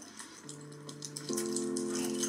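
Dramatic underscore music: a low held note comes in about half a second in, joined about a second later by a sustained chord of several notes, over a steady high hiss.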